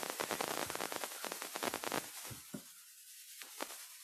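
Dense crackling static from a faulty microphone or audio feed, with no clear speech coming through. After about two seconds it thins out to a few scattered clicks and fades away.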